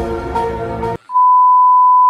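Background music cuts off suddenly about halfway through, and a steady, loud single-pitch test-tone beep of about 1 kHz starts, the tone that goes with TV colour bars.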